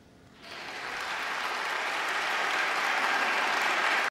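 Audience applause breaking out about half a second in, right after the final piano notes of the song, and swelling steadily louder.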